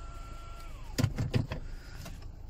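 Electric motor of the Mercedes A-Class panoramic roof whining at a steady pitch, then slowing with a falling whine and stopping about a second in. A few quick knocks follow.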